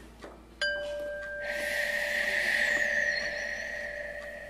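A magic transformation sound effect. About half a second in, a ringing chime-like tone starts suddenly and holds steady. About a second later a hiss swells in over it, then eases.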